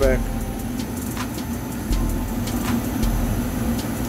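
Goodman gas furnace running with a steady mechanical hum, with a deep rumble that comes and goes every second or so.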